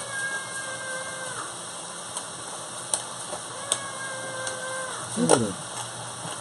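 A chef's knife slicing an onion, tapping a few times on a wooden cutting board. Two long held tones about two seconds apart and a short voice sound near the end are heard over it.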